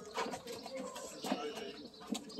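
Pigeons cooing, with a few sharp, irregular clops from a horse's hooves walking on pavement.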